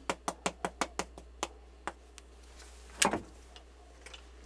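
Cinnamon shaker being shaken over a bowl: sharp quick clicks about six a second, slowing and thinning out after the first second. About three seconds in there is a single louder knock as the jar is set down on the counter.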